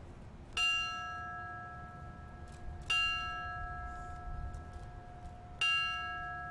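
A brass bell on a stand struck three times, about two and a half seconds apart, each stroke ringing on and slowly fading: the fire service's ceremonial bell toll for a fallen member.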